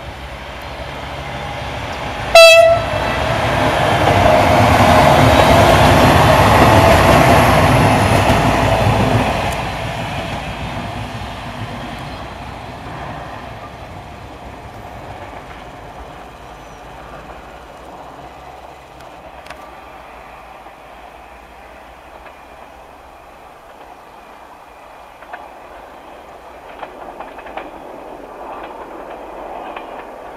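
A diesel multiple unit train sounds one short horn blast about two seconds in, then passes close by, its running noise on the rails swelling to a peak and fading over about ten seconds. A faint rumble with light clicks follows as it runs off into the distance.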